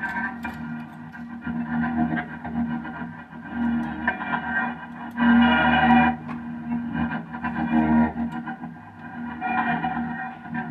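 Music from an electric instrument played through a chain of effects pedals: a steady, pulsing low drone with brighter swells about five seconds in and again near the end.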